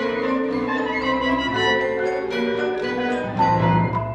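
Marimba and vibraphone playing rapid struck notes with an orchestra in a classical concerto, the music swelling to its loudest near the end.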